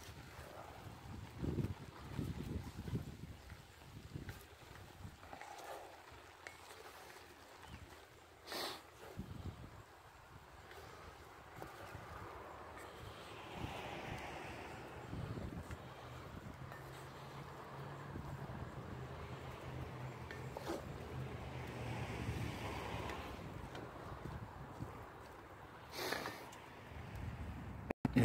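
Wooden spatula stirring and scraping a mix of browned venison and chopped vegetables in a cast iron Dutch oven, faint and irregular, with two sharp knocks, one about a third of the way in and one near the end.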